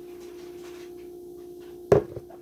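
A steady hum with one sharp kitchenware clank near the end.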